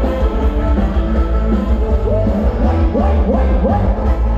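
Loud live band music for a Thai ram wong dance show, with heavy bass; in the second half a run of about four short upward-sliding notes.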